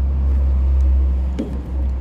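Loud, steady low rumble with little change throughout.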